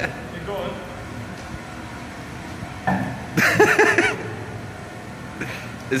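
A man's voice rising briefly about three seconds in, over the steady low hum of a small electric tug driving along.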